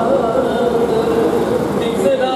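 Harmonium playing held, slightly wavering reed notes, with chanting voices.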